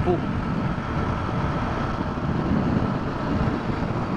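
Small motorcycle cruising steadily along a paved highway: a steady engine drone mixed with wind and road noise at the rider's camera.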